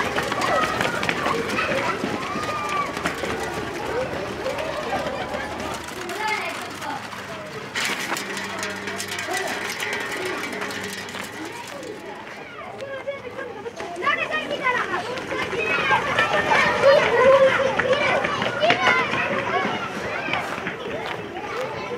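Children's voices shouting and calling while they run, with quick footsteps and clicks on a hard street. The voices fade in the middle and grow louder again in the last few seconds.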